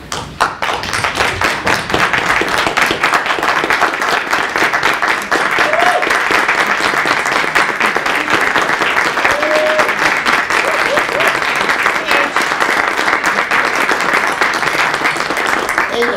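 Applause from a room full of people: dense, steady clapping by many hands that begins just after the start and stops abruptly at the end.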